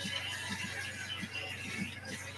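Background music playing from a television, over a steady low hum.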